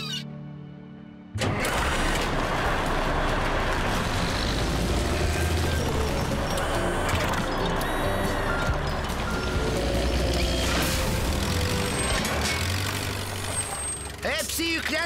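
Cartoon background music mixed with construction-vehicle engine and machinery sound effects. It starts suddenly about a second and a half in and holds a steady level.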